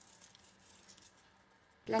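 Faint dry rustle and light crackles of a pinch of dried thyme crumbled between the fingers, mostly in the first second. A woman starts speaking near the end.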